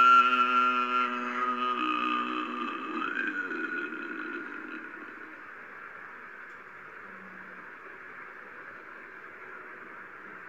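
A man chanting holds one long note that fades out over the first few seconds, with a brief upward slide near the end of it. A faint steady hiss follows.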